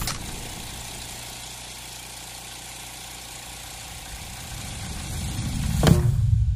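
A steady low hum and hiss that swells over the last couple of seconds, then a sharp click near the end as a button on a stereo receiver is pressed.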